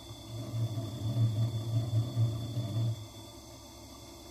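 Faceting machine at work: a low, uneven rumbling grind for about three seconds as the stone is pressed against the spinning lap, then it stops.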